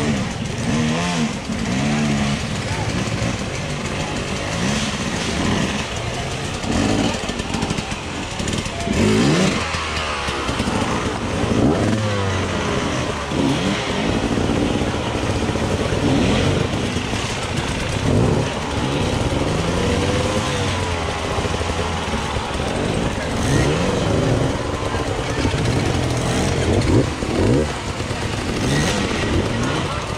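Several off-road dirt bike engines revving up and down unevenly as riders pick their way up a steep rock climb, with spectators' voices mixed in.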